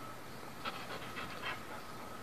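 An animal breathing in a quick run of about five short, breathy puffs, sniffs or pants, starting about half a second in. Under them run a steady hiss and a faint steady high tone.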